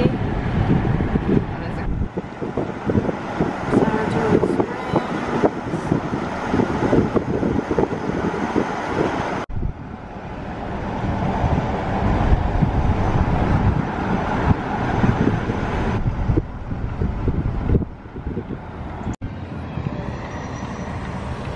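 Road and wind noise of a car driving at speed, heard from inside the cabin, steady throughout, with a sudden break about halfway through and again near the end.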